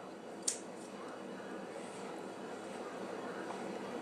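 Chopped red pepper pieces dropped by hand into a mixing bowl: one light tap about half a second in, then soft handling over faint steady room noise.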